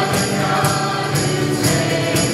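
Voices singing a worship song together over band accompaniment, with a jingling percussion hit on each beat about twice a second.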